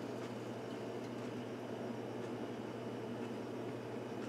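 Steady low hum and hiss of kitchen machinery, with a few faint light clicks as metal canning lids are set on glass jars.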